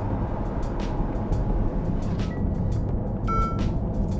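Inside the cabin of a Ferrari 296 GTS moving slowly while its retractable hardtop closes: a steady low road and drivetrain rumble with a few light clicks. A short beep-like tone sounds near the end.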